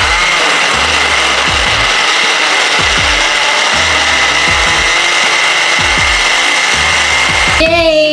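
Countertop blender running at full speed, its motor giving a steady loud whir with a high whine as it purées green apples and cucumber into juice. It cuts off near the end.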